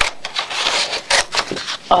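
Scissors cutting through construction paper: a rasping cut of about a second, with a few sharp snips.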